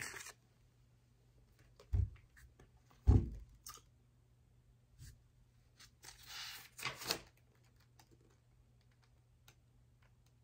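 Paper and cards being handled on a table: two dull knocks about two and three seconds in, a few faint clicks, then a paper rustle about six seconds in as notebook pages are moved.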